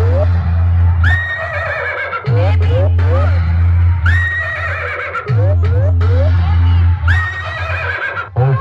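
Loud DJ music played through a stacked horn-loudspeaker sound system: a heavy, steady bass, with a short sample of rising glides and a held high tone repeating about every three seconds.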